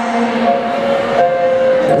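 Live pop ballad in a concert hall: the band holds a steady chord between sung lines, and a singer comes back in at the very end.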